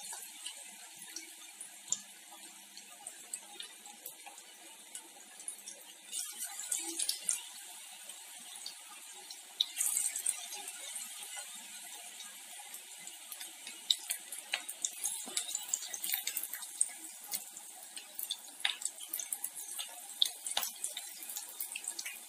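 Battered cauliflower and potato pakoras deep-frying in hot oil in a kadhai: a steady sizzle with many small crackles and pops, growing louder about six seconds in and again about ten seconds in as more battered pieces go into the oil.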